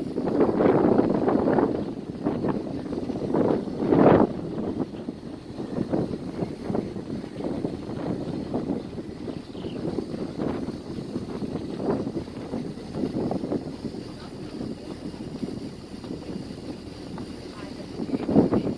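Indistinct voices of people talking, with wind on the microphone. It is loudest in the first couple of seconds and again in a short burst about four seconds in, then softer.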